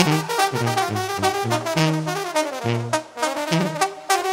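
A live banda (Mexican brass band) playing an instrumental passage: the brass section plays fast melodic lines over a bouncing line of short, repeated tuba bass notes. The playing dips briefly about three seconds in.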